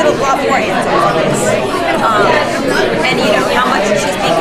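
Speech: a woman talking close by, over the background chatter of other people in a busy room.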